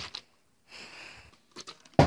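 A few small knocks and a brief rustle, then a plastic Smartwater bottle landing hard on a tabletop right at the end in a missed bottle flip.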